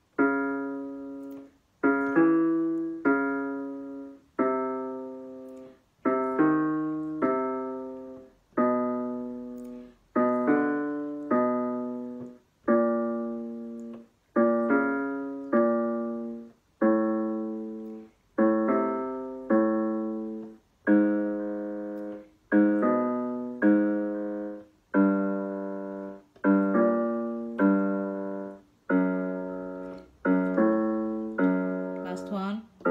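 Electronic keyboard with a piano sound playing the accompaniment to a jazzy minor-third singing exercise. A short group of a few struck notes is repeated about every two seconds, each repeat moved to a new pitch.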